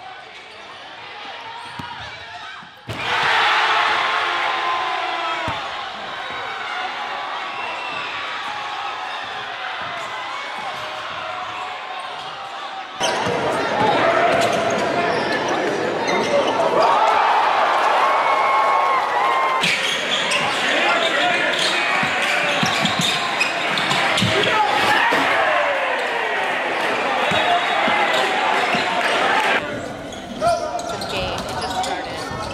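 Live basketball game sound in school gyms: the ball bouncing on the hardwood court over voices and crowd noise. The crowd noise gets louder about thirteen seconds in and stays loud.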